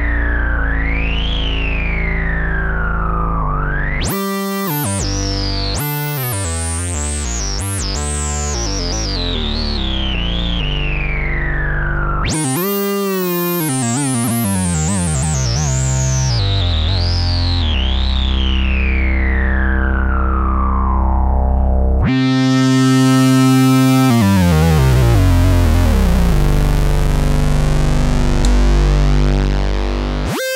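Minimoog synthesizer played, a mix of its oscillators through its resonant filter: sustained low notes with a bright filter peak sweeping up and down every second or so, then in longer falling sweeps. The freshly repaired synth is sounding, which the restorer calls really good.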